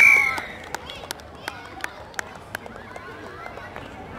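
A referee's whistle gives one short, sharp blast right at the start, the loudest sound. Then come six sharp clicks, evenly spaced about three a second, over faint distant shouting from players and spectators.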